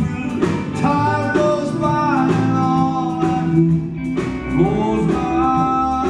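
A country band playing live, with long sliding, sustained notes from a pedal steel guitar over electric guitar, bass, piano and drums.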